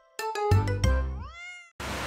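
Short channel intro jingle: a few plucked, ringing notes, then one smooth upward-gliding note that levels off and fades. Near the end it cuts abruptly to steady traffic noise.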